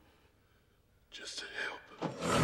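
A man's brief whisper, starting about halfway through after near silence.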